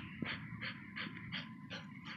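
A pit bull breathing hard through its nose in quick, even puffs, about three or four a second, while it holds a grip on a tug hide.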